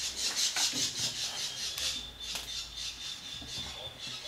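Plastic rubbing and rasping in quick strokes, about five a second, as a fermentation airlock is twisted and pushed into the hole in a plastic fermenter bucket's lid. The rubbing eases off after about two seconds.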